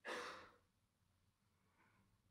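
A short breath out at the lectern microphone, about half a second long at the start, then near silence: room tone.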